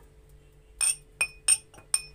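Small glass cups clinking as they are handled: about four sharp clinks in the second half, each with a short bright ring.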